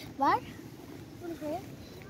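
A young girl's voice: one word at the start and a brief sound about a second and a half in, over a low steady background hiss.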